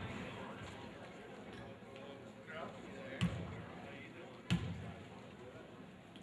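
A basketball bounced twice on a hardwood gym floor, about a second and a quarter apart: a player's dribbles at the free-throw line before the shot. Voices murmur in the gym.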